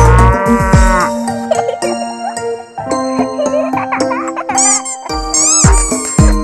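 A cow's moo, one drawn-out call rising and falling in pitch over about the first second. It is followed by bright children's instrumental music with high chirping glides near the end.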